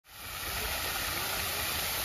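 Park fountain jet spraying and splashing into a pond: a steady rushing hiss that fades in at the start.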